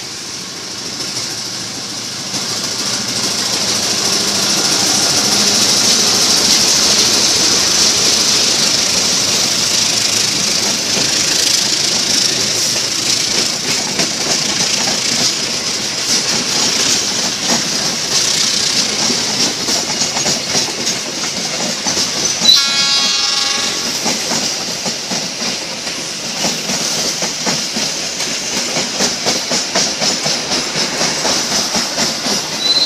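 Diesel-hauled passenger train passing close by: the sound grows louder over the first several seconds as the locomotive approaches and goes past, then the coaches' wheels clatter steadily over the rail joints. About two-thirds of the way through there is a sharp click followed by a brief high ring.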